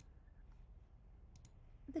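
Quiet room tone with a steady low hum, and a couple of faint clicks about a second and a half in. A spoken word starts at the very end.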